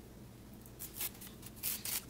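Paper backing being peeled off fusible hem tape: brief, soft papery rasps, one about a second in and another near the end.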